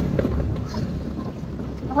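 Wind buffeting the microphone over the low, steady rumble of a motorcycle riding over a rough gravel track.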